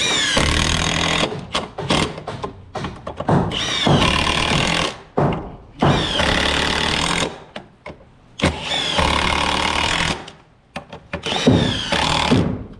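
Milwaukee cordless impact wrench hammering bolts through a steel beam bracket into a timber beam, in about six bursts of one to two seconds each with short pauses between them.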